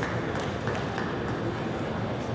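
A few light, sharp clicks of a table tennis ball being bounced, over the steady murmur of a large hall.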